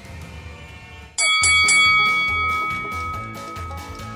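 Background music, then about a second in a bright bell-like chime sound effect is struck a few times in quick succession and rings on, fading, over music with a steady beat. It marks the start of a 30-second countdown timer.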